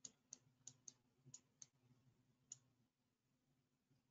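Faint clicks of a computer mouse while a document is scrolled on screen: about seven short, irregularly spaced clicks in the first two and a half seconds, over a low steady hum.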